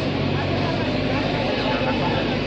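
JCB backhoe loader's diesel engine running steadily, with people's voices talking over it.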